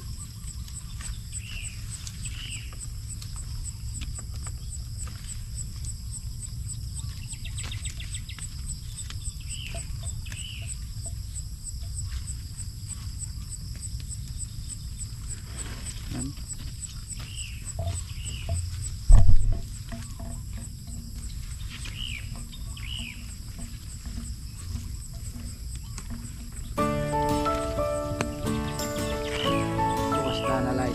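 Outdoor garden ambience: insects trilling steadily at a high pitch, and a bird giving a pair of short calls every few seconds, over a low wind rumble on the microphone. A loud low thump comes about two-thirds through, and background music comes in near the end.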